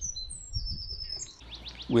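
Small birds chirping: short, high whistled notes, some held briefly, then a quick run of falling sweeps near the end, over a faint low rumble.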